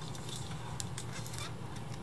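Reel-to-reel tape deck switched on, with a steady low hum, and scattered light clicks of hands handling a clear plastic tape reel on its spindle.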